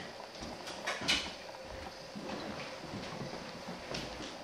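Faint footsteps and small knocks on a hardwood kitchen floor, with one sharper knock about a second in.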